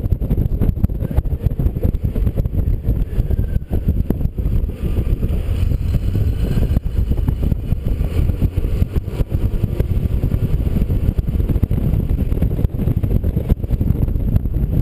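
Wind buffeting the microphone of an action camera mounted on the outside of a moving car: a loud, low, fluttering rumble that never lets up, with road noise underneath.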